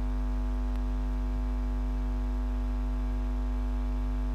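Steady electrical mains hum and buzz, one unchanging low drone with a stack of higher overtones, with no other sound.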